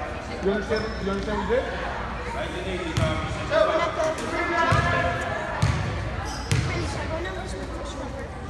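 Basketball bounced on a hardwood gym floor four times, about once a second from about three seconds in, as a player dribbles at the free-throw line, with voices chattering in the gym.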